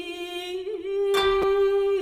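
Traditional Japanese koto music: a long held melody note with wavering ornaments, and a koto string plucked about a second in, ringing on.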